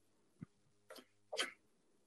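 A few faint, short breathy noises from a person at a call microphone, twice about a second apart, after a single soft click about half a second in.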